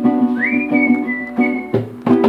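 A live band plays repeated chords on electric guitar with drums. Over the chords a single high, pure whistle glides up about a third of a second in and is held, stepping slightly down, for more than a second before it stops.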